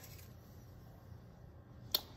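Quiet room tone with a faint low steady hum, broken by a single sharp click near the end.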